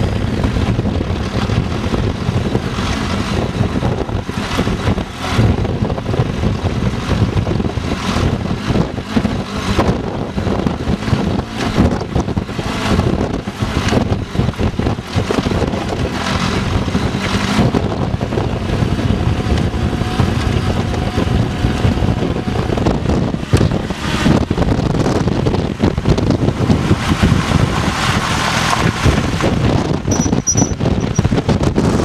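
Wind buffeting the microphone over the running engine of a motorcycle with a sidecar, riding steadily along a rough gravel track.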